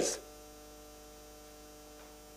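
Faint, steady electrical mains hum, a few even tones held without change. The end of a man's spoken word is heard at the very start.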